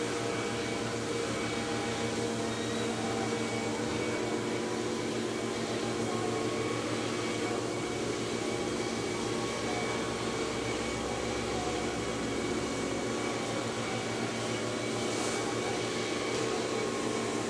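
Electric potter's wheel running at a steady speed, its motor giving a constant even hum.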